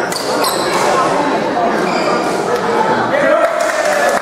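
Badminton rally in a large gym hall: rackets striking the shuttlecock with sharp smacks, and shoes squeaking on the hard floor. Voices carry in the hall, one calling out near the end.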